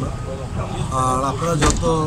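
A man talking, over a steady low background rumble, with one sharp knock about one and a half seconds in.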